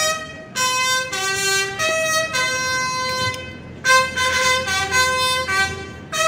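Brass band playing a slow tune in long held chords, several notes sounding together and changing every second or so, with brief breaks between phrases.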